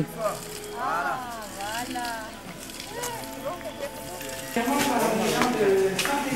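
Foot-operated water pump being worked by treading, with a squeak that rises and falls on each stroke, about once a second.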